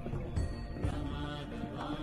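Background devotional music with a chanted mantra, mostly held, steady notes.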